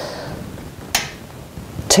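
A soft breathy exhale fading out, then a single short, sharp click about a second in.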